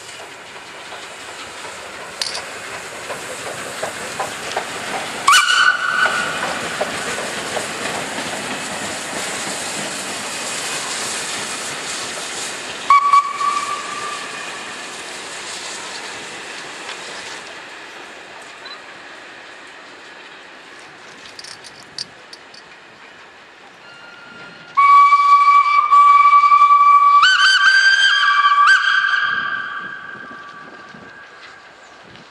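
The SNCF 241P17 4-8-2 steam locomotive pulls its train away with a loud rush of exhaust and steam hiss, and gives two short whistle blasts about five and thirteen seconds in. Near the end comes a long, loud whistle: one note, joined about two seconds later by a second, higher note, stopping just before the end.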